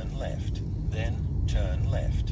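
Steady low rumble of a car's engine and tyres, heard from inside the cabin while driving.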